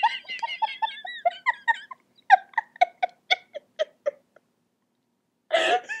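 A person giggling helplessly: a rapid string of short, high-pitched laugh bursts, about four or five a second, that dies away after about four seconds. A louder burst of laughter breaks out again near the end.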